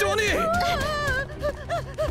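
A cartoon character's voice crying out in alarm, the pitch wavering up and down, then breaking into a quick run of short yelps in the second half.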